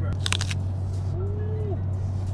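Paper food wrapper crinkling briefly as it is pulled open, about a quarter second in, over the steady low rumble of a car cabin on the move.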